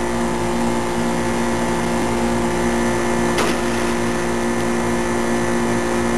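Steady mechanical hum made of several held pitches, unchanging throughout. A brief faint sound comes about three and a half seconds in.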